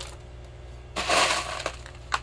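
Expanded clay pebbles rattling and crunching as they are packed by hand around a root ball in a plastic hydroponic net pot: a short burst about a second in, then a click.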